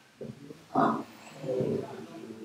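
Whiteboard marker squeaking across the board in three short strokes, the middle one the loudest.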